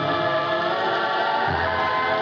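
Film background score: a choir holding long sustained notes over a low bass line that shifts about one and a half seconds in.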